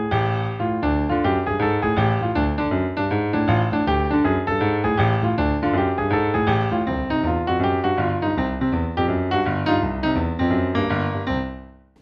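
Digital stage piano playing a boogie-woogie left-hand pattern in D: an octave D, then F-sharp and half steps up G, A-flat and A. Above it the right hand plays a D minor blues pentascale figure. The notes die away near the end.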